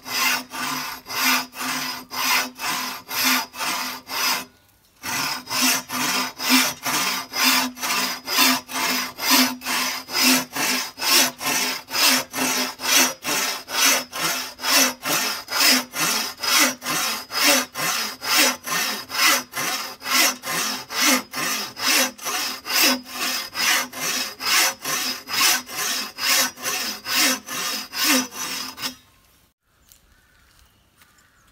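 Hand saw cutting through a thick sang mhon bamboo culm, rasping back and forth at a steady pace of about two strokes a second, with a brief pause about four and a half seconds in. The sawing stops about a second before the end as the cut goes through.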